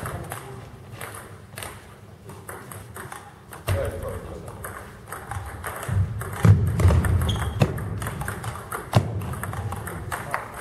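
Table tennis balls clicking sharply off paddles and tables in quick irregular rallies, with thuds of players' feet on the hall floor.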